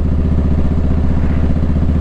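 Motorcycle engine idling steadily, an even low pulsing hum.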